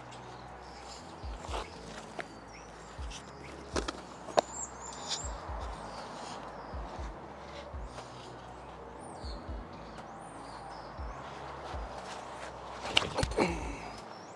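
Outdoor park ambience with small birds chirping briefly several times, scattered light steps and clicks, and a short louder burst near the end as a disc golf drive is thrown.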